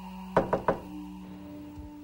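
Three quick knocks on a door, over a steady, sustained music drone.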